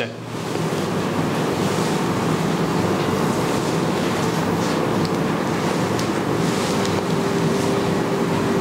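A steady rushing noise with a faint low hum running under it.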